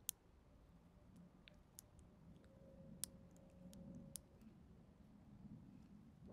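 Near silence broken by a scattering of faint, sharp clicks and ticks, the sharpest near the start and about three and four seconds in. They come from a small tool tapping and catching against a blackthorn thorn held on a wooden surface.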